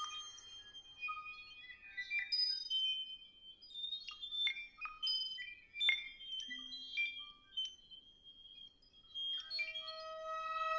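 Sparse contemporary music for violin and live electronics: thin, high held tones and short pinging, plucked-sounding attacks scattered with gaps between them. A fuller sustained sound begins near the end.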